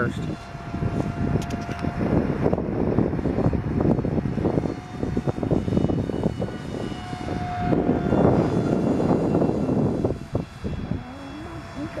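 Radio-controlled model airplane flying overhead, its motor heard as a thin high whine that comes and goes, over heavy rumbling noise.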